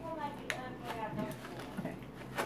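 Quiet murmured talk with a few light, sharp clicks and rustles from a plastic snack bag of dry roasted edamame being handled as the beans are taken out; the sharpest click comes about half a second in.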